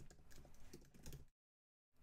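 Faint computer keyboard typing, a few soft key clicks, then dead silence for the last half second or so.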